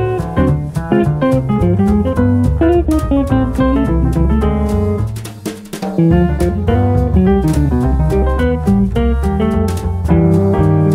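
A small jazz band with guitar, bass and drum kit playing an old-school big-band bounce swing feel. The band breaks off briefly a little past five seconds in, then comes back in together.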